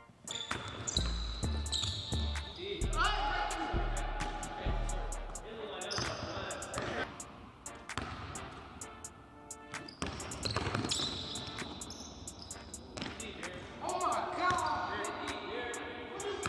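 Basketballs bouncing and slapping on a hardwood gym floor during a pickup game, echoing in a large hall, with players' voices around them. A music track's bass notes carry through the first few seconds, then fade out.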